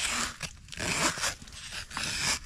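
Plastic trowel edge scraping caked sand and mud off a shoe insole, two scraping strokes about a second apart.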